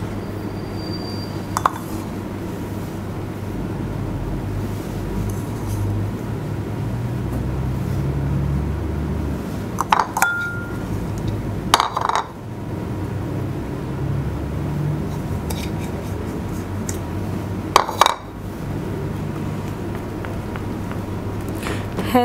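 A few sharp clinks of dishes and utensils, one ringing briefly, as pizza toppings are spread on a baking tray, over a steady low hum.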